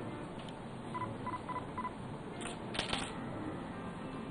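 Four short electronic beeps in quick succession, about a quarter second apart, then a few sharp clicks a little over halfway through, like camera shutters at a photo handover.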